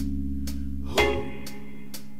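Band music: sustained chords, likely guitar, struck afresh about every second and a half, with light cymbal ticks about twice a second.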